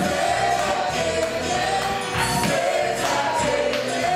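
Live gospel worship music: a band with drums and guitar playing to a steady beat while many voices sing together, with tambourine-like jingles in the percussion.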